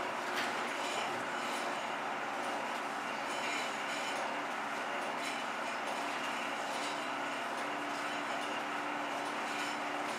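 16mm film projector running with a steady mechanical whir and faint clatter.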